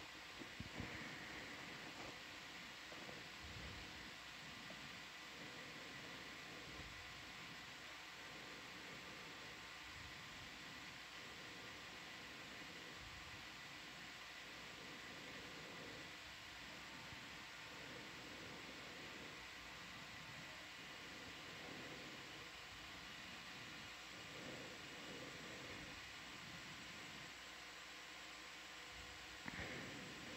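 Near silence: a faint steady hiss with a few faint steady hum tones underneath, and no distinct event.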